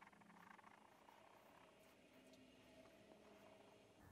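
Near silence: room tone with a faint steady hum and a few very faint ticks.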